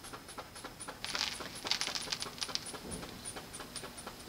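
Rubber inflation bulb of a blood pressure cuff being squeezed by hand to pump the cuff up, with a run of quick clicks and two short hisses of air about a second and two seconds in.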